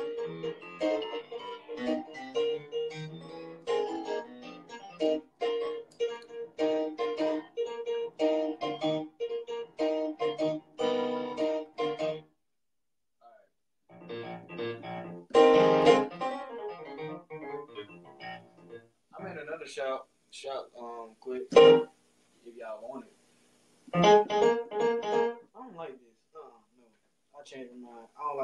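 Sampled piano played on a keyboard: a long run of short repeated notes, a pause about twelve seconds in, then scattered louder chords and stabs.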